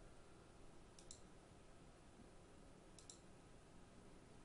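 Two faint computer mouse clicks about two seconds apart, each a quick double tick of the button pressing and releasing, over low room hiss.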